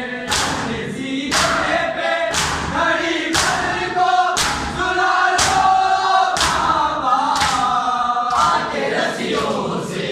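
A group of voices chanting a noha, a Shia mourning lament, in unison. It is punctuated by sharp, regular thumps about once a second, in time with the chant, typical of matam (rhythmic chest-beating by the mourners).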